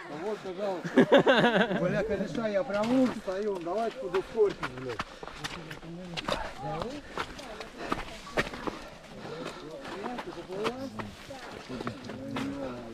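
Indistinct voices of people talking, loudest in the first few seconds, over footsteps squelching through slushy mud and snow. Many short clicks and cracks run through it as bodies push through bare branches.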